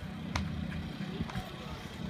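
Steady low rumble of outdoor background noise, with one short sharp click about a third of a second in.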